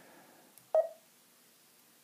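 Garmin Zumo 390 LM GPS touchscreen giving one short key-press beep about three-quarters of a second in, confirming a tapped menu item.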